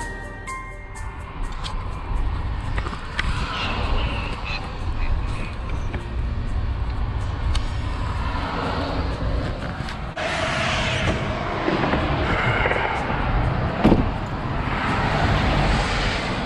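Background music ends in the first second, followed by a steady low rumble of a 1999 Freightliner Century Class truck heard from inside its cab. The noise changes abruptly about ten seconds in.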